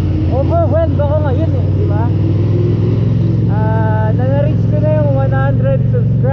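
Yamaha MT-07's parallel-twin engine running at a steady low pitch while riding slowly in traffic, without revving, with a voice over it.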